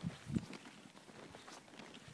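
Snowshoe footsteps crunching in snow, with two soft thumps in the first half second, then faint, scattered crunches.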